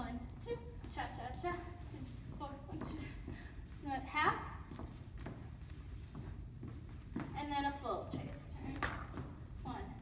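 A voice calling the cha-cha counts aloud in short bursts, over light steps of hard-soled dance shoes on a wooden floor.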